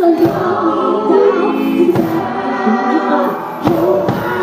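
Live band performance: a female lead voice singing with layered choir-like harmony vocals, driven by a heavy low thump that lands about every 1.7 seconds.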